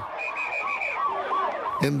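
Vehicle siren on a fast yelp, its pitch sweeping up and down about three times a second, with a brief steady high tone over it at first. It gives way to a man's voice near the end.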